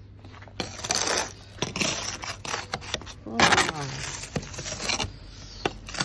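Snow being swept and scraped off a car's window with a hand-held snow brush, in several separate scraping strokes.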